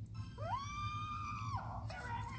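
One high-pitched held scream, sliding up at the start, holding steady for about a second, then breaking off. A low steady hum runs underneath.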